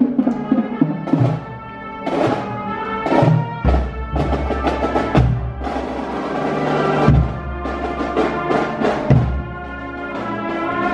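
Marching band playing as it marches past, horns carrying the tune over repeated drum beats.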